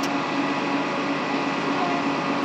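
A nearby engine running steadily: an even mechanical drone with a constant hum through it, holding at one level.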